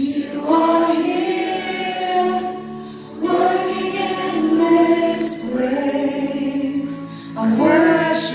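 Worship team and congregation singing a slow contemporary worship song over a keyboard, in long held phrases with a new one starting every two to three seconds.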